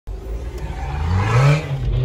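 Car engine accelerating, its note rising steadily over the first second and a half and then holding.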